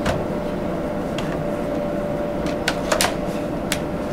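Steam cleaner extension tubes being pushed together and locked into position, giving a few short sharp clicks, the loudest a quick double about three seconds in, over a steady hum.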